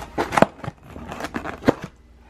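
Takeout food packaging being handled: rustling of a paper bag with a series of sharp clicks and knocks from the molded takeout box and a plastic sauce cup, two louder knocks about half a second in and near the end.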